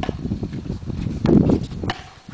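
A paddle striking a tennis-type ball during a rally: a knock at the very start and a sharp pock just before the end, over a low rumble from the outdoor court that swells a little past the middle.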